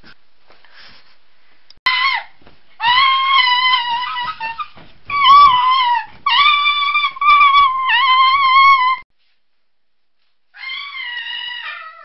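Shrill human screaming in a run of long, wavering, high-pitched cries, broken by short gaps. After a brief silence near the end comes one more cry that falls in pitch.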